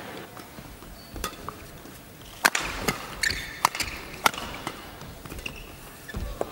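Badminton rally: a shuttlecock struck back and forth by rackets, sharp cracks roughly a second apart, with short shoe squeaks on the court floor over a low arena background.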